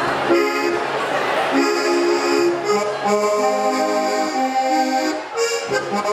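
Styrian button accordion (Steirische Harmonika) played while the player sits on it, his weight working the bellows: held chords and a melody line changing every second or so, with a brief break about five seconds in.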